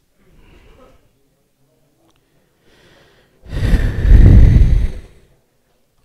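A loud breath exhaled close to the microphone, a rushing, hissing blow lasting nearly two seconds, with fainter breaths before it.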